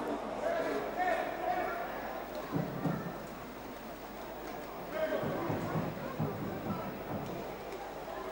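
Indoor pool hall ambience during a water polo match: faint, distant voices and shouts over low splashing of swimming players, quieter than the commentary around it.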